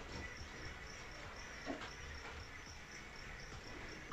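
Faint, evenly repeated high chirping, like a cricket, pulsing several times a second, with a soft knock just under halfway.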